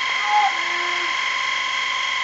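Electric fan running with a steady high-pitched whine.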